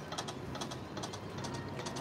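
Video slot machine reels spinning, a run of quick irregular clicks as they turn and come to a stop.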